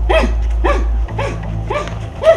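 Four short, loud vocal cries, about two a second, each rising then falling in pitch, over a steady low hum.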